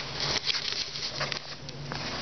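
Close rustling and crackling of a plastic bag with light knocks as it and a metal folding-chair leg are handled right by the microphone, a quick irregular run of small clicks.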